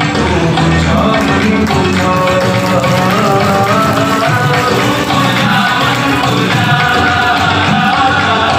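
A devotional song playing: a sung melody over steady percussion and instruments.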